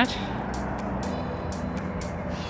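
Steady road-traffic noise from passing cars and a pickup truck, a low even rumble.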